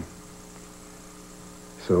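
Low, steady electrical hum, several fixed tones with faint hiss under them. A voice starts speaking near the end.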